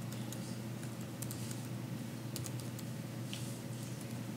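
Scattered, irregular clicks of typing on a laptop keyboard over a steady low room hum.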